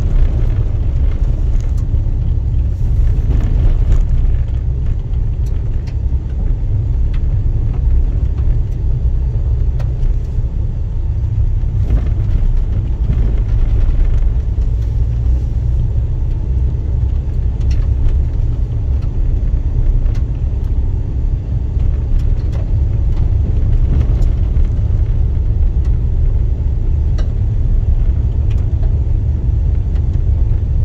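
A car driving along an unpaved dirt road: a steady low rumble of engine and tyres, with scattered small clicks and knocks over the rough surface.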